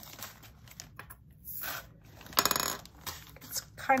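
Square diamond-painting drills poured into a small plastic storage container: a dense rattle of many tiny beads lasting about half a second, a little past the middle, after a faint rustle shortly before.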